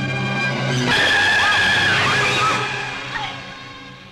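Film soundtrack: a held orchestral chord, then about a second in a sudden loud crash of noise over the music that fades away over the next two seconds, a dramatic hit marking a fall.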